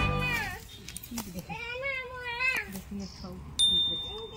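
Background music stops just after the start. Then one drawn-out, pitched, meow-like call of about a second, falling at its end. Near the end comes a short, sharp electronic chime, the sound effect of a subscribe-button animation.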